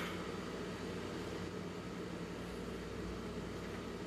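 Steady low hum with a light hiss, like a small motor such as a fan running in a room.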